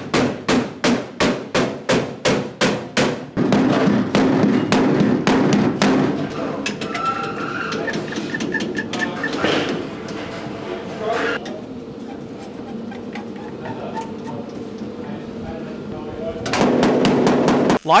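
Rapid hammer blows, about three a second, knock a wooden block against a steel sheet-metal dash to seat its folded hem over the cab's sheet metal. After that come quieter shop sounds of clamping. About a second and a half before the end, a MIG welder starts plug-welding the dash, with a steady loud crackle.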